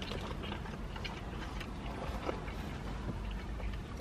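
A person chewing a mouthful of hamburger with the mouth closed: soft, irregular mouth clicks.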